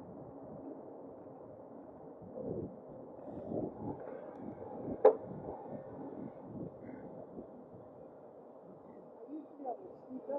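Muffled low rumble of wind and tyre noise while riding an e-bike along a paved lane, with one sharp click about five seconds in.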